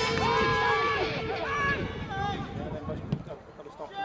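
Footballers' shouts and calls across the pitch as backing music fades out in the first second, with one sharp knock about three seconds in.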